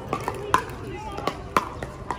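Pickleball paddles hitting a hard plastic ball in a rally: a series of sharp, hollow pops, the loudest about half a second in and again a second later, with fainter pops from play at neighbouring courts.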